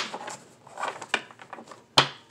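Tarot cards being shuffled by hand: a few short, soft slaps and rustles of the cards, with a sharper snap at the very end.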